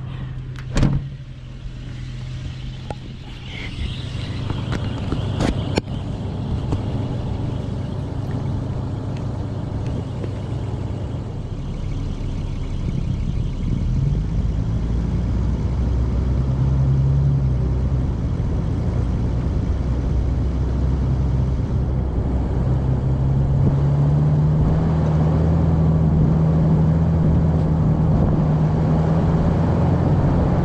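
Toyota Land Cruiser 80 Series's 4.5-litre straight-six engine running and pulling away slowly, the engine note rising in pitch and level at about 14 s and again from about 23 s. A sharp knock about a second in.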